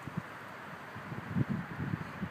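Outdoor wind noise on a phone microphone: a steady hiss, with a few soft low thumps clustered about a second and a half in.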